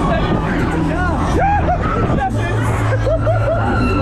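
Loud fairground din on a running Huss Break Dancer ride: many short rising-and-falling shouts and voices over music with a steady low bass and the ride's constant running noise.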